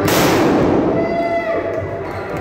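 Confetti shooter going off: one sudden loud burst that fades away over about a second, sending confetti and smoke over the trophy winners.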